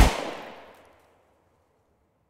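The last beat of a hip-hop track: one final loud hit at the very start that rings out and fades to silence in under a second.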